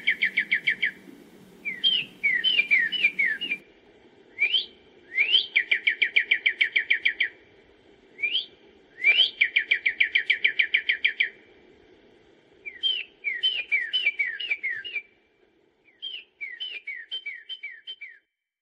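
A songbird singing. Its phrases alternate between runs of quick down-slurred whistles and a rising note that leads into a fast, even trill, all over a faint steady hum.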